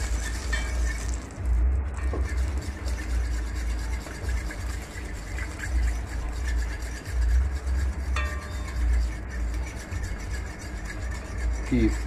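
A fork stirring and scraping curry powder frying in hot oil in a metal pot, with faint clinks against the pot, over a steady low rumble. This is the curry being fried in the oil before the seasoning goes in.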